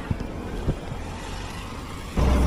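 Motorcycle engine idling at a standstill: a low, steady rumble with a couple of faint clicks.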